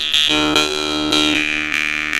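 Glazyrin Petrel jaw harp played as a steady buzzing drone, plucked about twice a second. Its high overtone melody steps down in pitch about halfway through.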